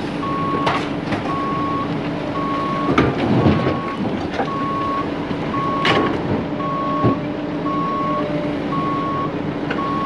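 A heavy-equipment backup alarm beeps steadily about once a second over a running diesel engine. Several crashes of wood debris being dropped into a steel dump-truck bed sound on top of it, the heaviest a few seconds in.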